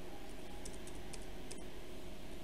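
Computer keyboard keys pressed as text is deleted: four or five short, light clicks in quick succession around the middle, over a steady low hum.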